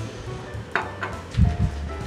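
Soft background music with a steady bass line, with a light clink from a utensil at the pan about three-quarters of a second in and a low thump a little after halfway.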